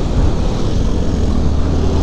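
Motorcycle engine running steadily at cruising speed, a constant low hum under the rush of wind and road noise.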